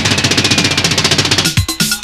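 Live soca band: a fast, even drum roll on the kit, then about one and a half seconds in the full groove returns with bass drum hits and pitched instrument lines.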